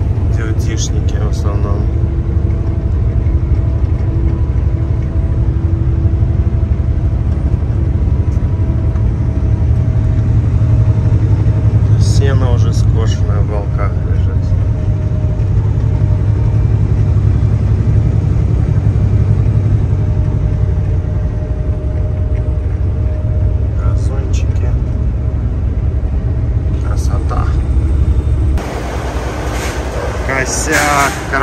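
Cab-interior sound of a Kenworth W900L heavy-haul tractor's diesel engine and drivetrain while driving: a loud, steady low rumble. It drops shortly before the end.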